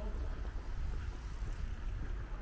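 Outdoor street ambience dominated by a low, uneven rumble, like wind buffeting the microphone of a walking camera.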